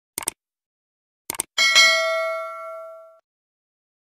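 Subscribe-button animation sound effects: two quick clicks, two more about a second in, then a single bright bell ding, the loudest sound, ringing out for about a second and a half.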